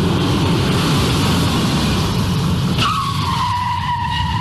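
Sound effect of a car driving, a heavy low engine and road rumble, then about three-quarters of the way through, tyres begin to screech in a long, steady-pitched skid.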